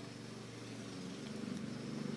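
Faint steady low hum of background room tone, with no distinct event.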